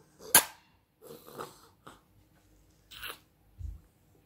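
A sharp knock or slap about a third of a second in, followed by a few softer scuffs and a dull low thump near the end, like hands on a wooden panel or on the phone.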